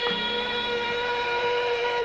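Male flamenco singer (cantaor) holding one long note at a steady pitch at full voice.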